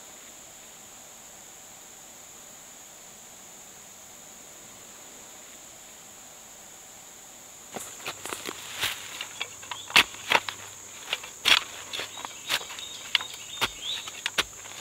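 Steady high insect buzz, then from about eight seconds in a folding entrenching tool chopping and scraping into grassy soil: a run of irregular sharp strikes, several a second, as the blade cuts through turf.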